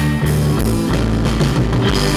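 Live rock band playing an instrumental passage: electric guitars, bass guitar and drum kit.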